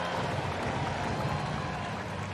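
Ballpark crowd noise: a steady murmur from the stands after a called third strike, easing slightly toward the end.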